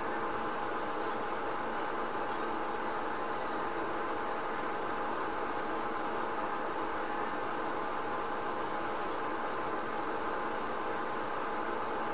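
A steady mechanical hum with hiss that holds at one level throughout.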